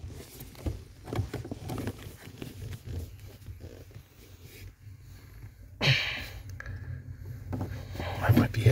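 Brake light switch being worked into its bracket under a car's dashboard: rustling of wiring and plastic with small clicks and scrapes as it is pushed and turned, without snapping into place. A loud short burst of noise about six seconds in.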